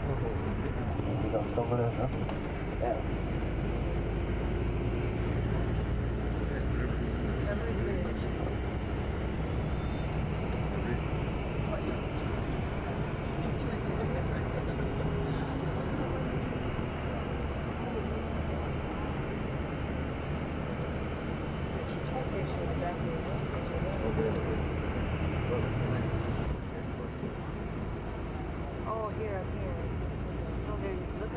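Steady engine and road rumble inside a moving tour coach, with indistinct passenger voices murmuring over it; the rumble drops a little near the end.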